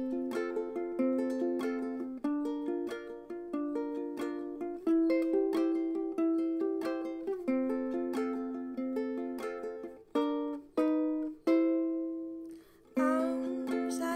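Fender ukulele played alone as an instrumental break, a quick steady run of picked notes that thins to a few separate, ringing single notes about ten seconds in, with a short lull before the next phrase begins near the end.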